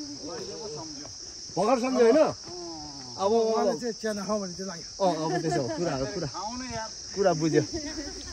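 A steady, high-pitched insect chorus drones continuously, with bursts of several people talking and calling over it.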